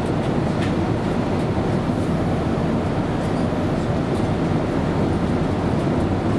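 Steady in-flight cabin noise of a Boeing 787-8 airliner: a constant low rush of engines and airflow. A few faint ticks and creaks come from cabin fittings as the aircraft shakes in turbulence.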